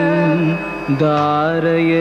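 Title-song singing in Carnatic style: a single voice holding long notes with wavering, ornamented glides, pausing briefly about a second in before the next held note.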